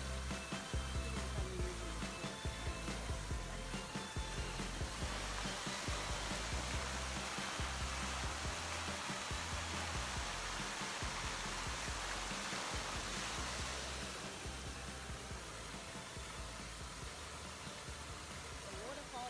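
Music with a deep, pulsing bass beat. From about five seconds in until a few seconds before the end, it is joined by the steady rush of water falling in an outdoor fountain.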